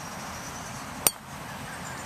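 A golf driver's clubhead striking a ball: one sharp click about a second in.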